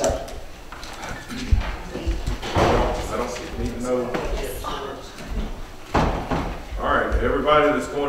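People talking indistinctly, with a few dull knocks, the sharpest about a second and a half in.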